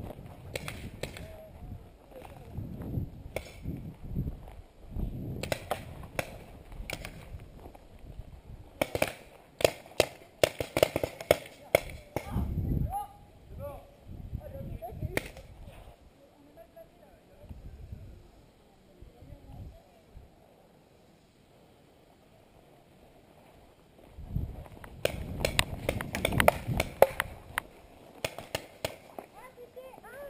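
Paintball play: groups of sharp pops and snaps with rustling movement, the densest run of pops about ten seconds in, then a stretch of near quiet before another cluster near the end.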